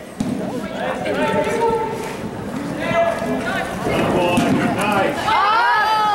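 Spectators' voices talking and calling out over the hoofbeats of polo ponies on the arena's dirt footing. Near the end there is a loud, long cry that rises and falls in pitch.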